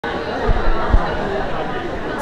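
Background chatter of several voices talking at once in a large room, with no one voice standing out. Two short low thumps come about half a second and about a second in.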